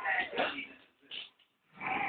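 Eight-week-old Staffordshire bull terrier puppy growling in play, in short bouts: one at the start, a brief one just after a second in, and another near the end.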